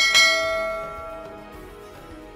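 One bell chime sound effect, struck once and ringing out, fading over about a second and a half, over soft background music.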